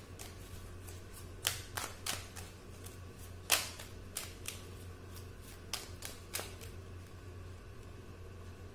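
A deck of oracle cards shuffled by hand: a run of irregular sharp card snaps and taps, the loudest a little past the middle, over a steady low hum.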